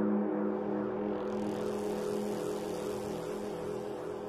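A steady low drone of several held tones. About a second in, a soft hiss joins above it.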